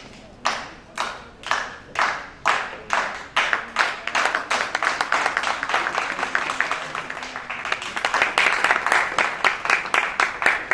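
Audience clapping in time, about two claps a second, in a reverberant hall, swelling into denser, louder applause over the second half.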